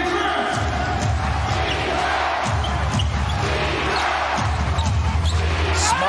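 A basketball being dribbled on a hardwood arena court, heard as repeated low thumps over crowd noise and arena music.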